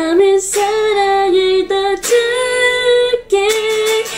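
A woman singing a Korean song, holding long notes; the longest, slightly higher note comes about halfway through.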